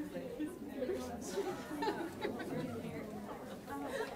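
Many people talking at once in a room: overlapping, indistinct conversation with no single voice standing out.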